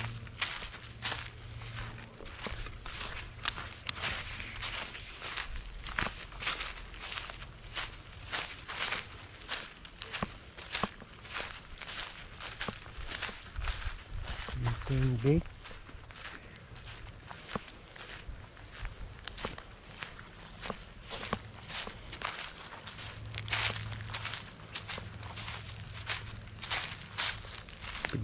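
Footsteps crunching over dry leaf litter and pine needles at a steady walking pace, one crackling step after another.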